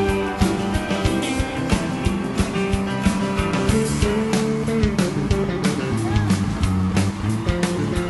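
Live rock and roll band playing an instrumental stretch: steady drum beat with piano, bass and electric guitar.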